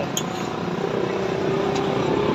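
Street traffic noise, with a motor vehicle's engine humming steadily and growing stronger from about a second in.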